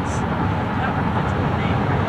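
Car driving at highway speed, heard from inside the cabin: a steady rush of road and tyre noise.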